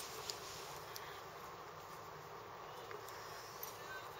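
Quiet room tone: a faint steady hiss and hum, with two small clicks in the first moment.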